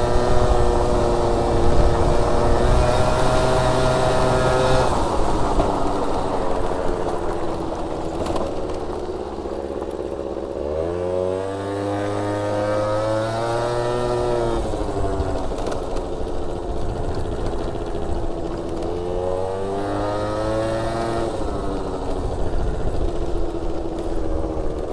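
A Gilera Stalker's 50cc two-stroke scooter engine under way off-road, its revs rising and falling several times as the throttle is opened and eased. The climb about halfway through is the strongest.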